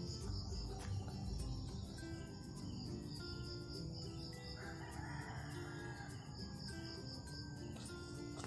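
A rooster crowing once, about halfway through, over a steady background of rapid, evenly repeating high insect chirps.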